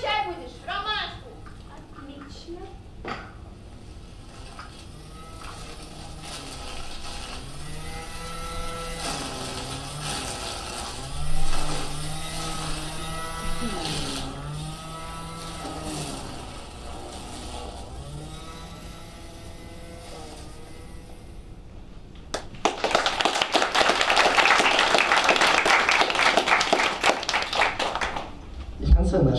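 Audience applauding, loud and dense, for the last five seconds or so. Before it, a quiet slow melody with long held notes.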